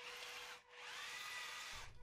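Faint whine of the small electric drive motors of a 3D-printed omnidirectional tracked robot as it manoeuvres. A thin steady tone in the first half, a brief drop about half a second in, then a whine that rises and levels off.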